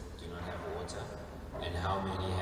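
A person's voice speaking quietly, the words not made out, growing louder near the end.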